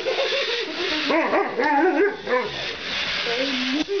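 Alaskan malamute vocalizing in a string of short yips and whines that rise and fall in pitch, ending in a lower held note.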